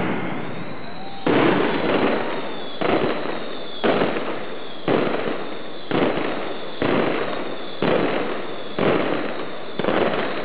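Mascletà firecrackers going off in dense, continuous crackling volleys. A new loud wave of bangs hits about once a second and fades before the next.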